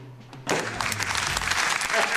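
Audience applause, starting suddenly about half a second in and carrying on as a dense, steady clapping.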